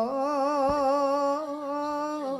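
A solo singing voice holding one long, steady note with a wavering vibrato, with a single short click about two-thirds of a second in.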